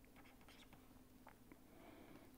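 Near silence: a few faint ticks and scratches of a stylus writing on a pen tablet, over a faint steady hum.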